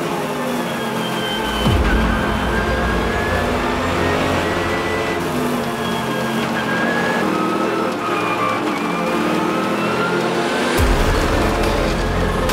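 Onboard sound of a Mercedes-AMG GT3 race car's V8 at racing speed, its pitch climbing through the gears and dropping back at each shift, mixed with background music that has a deep bass coming in about two seconds in and again near the end.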